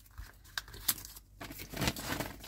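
Thin clear plastic parts bags crinkling and rustling as hands handle them, with a few light clicks, the rustling thickening near the end.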